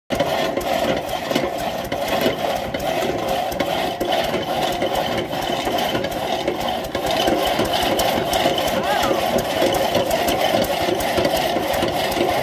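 The engine of a restored New Record dragsaw running with a steady clatter and a string of uneven knocks.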